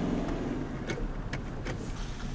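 Car running, heard from inside the cabin while driving slowly along a rough dirt track: a steady engine hum that fades after the first part, a constant low rumble, and a few short sharp clicks.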